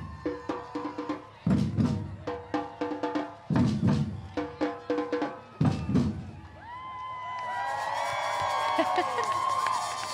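Samba percussion band playing: deep surdo bass-drum hits about every two seconds under a quicker pattern of snare and repinique strokes. The drumming stops about six and a half seconds in, and many voices cheering and calling out rise after it.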